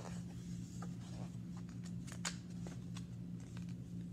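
Picture-book page being turned by hand: a few short paper rustles and clicks, the loudest about two seconds in, over a steady low hum.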